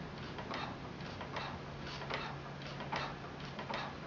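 Manual treadle pottery wheel turning as it is pedalled, with a light ticking about two to three times a second over a steady low hum.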